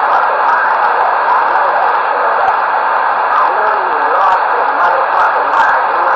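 Loud, steady radio static hissing from a CB-style radio's speaker, with faint garbled voices wavering underneath.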